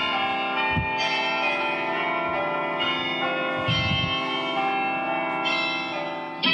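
Bells pealing in a quick run of overlapping strikes, each note ringing on under the next.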